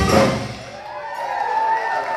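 Live soul band of electric guitar, drums and saxophone hitting the end of a song: the band stops about a third of a second in and rings out. A single long held note follows from about a second in.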